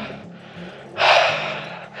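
A person's sharp, noisy breath about a second in, fading away: cold-shock breathing after a plunge into icy water.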